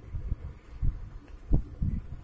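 Irregular low thumps and rumble, six or so, the loudest about one and a half seconds in.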